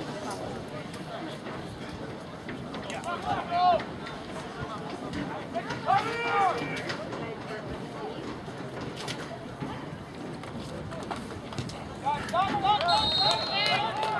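Distant shouts and calls from players and sideline over open-air background noise, coming in short separate bursts: one about three and a half seconds in, one around six seconds, and a run of calls near the end. A short high referee's whistle sounds briefly among the last calls.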